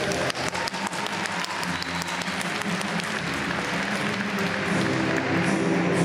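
Figure-skating program music playing over the arena speakers, with audience applause and clapping over roughly the first two seconds; the music comes through more strongly after that.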